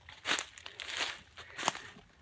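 Footsteps crunching through dry fallen leaf litter, a handful of irregular crackling steps.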